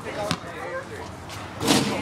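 A basketball bouncing in a couple of short sharp knocks under background chatter of kids' voices, then a sudden loud burst of shouting and laughter near the end.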